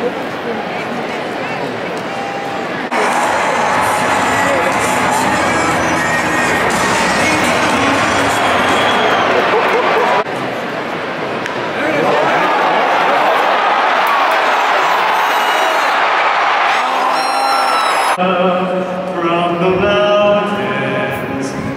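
Ballpark crowd: a dense hubbub of many voices filling the stands, heard in several short cut-together shots. Near the end a single sung voice comes in over the stadium loudspeakers, echoing across the stands.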